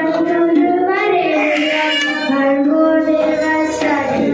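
A boy singing solo into a handheld microphone, drawing out long held notes that bend gently in pitch.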